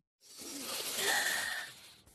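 A slow breath drawn in through the nose, taken as part of a belly-breathing exercise. It is a soft rush of air that swells for about a second and then fades away.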